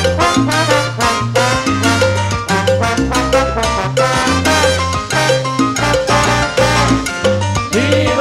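Live salsa band playing, with a brass section of trombones and trumpets over a bass line and percussion.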